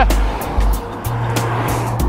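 Background music with sustained bass notes and a beat of percussive hits; the bass note changes about a second in.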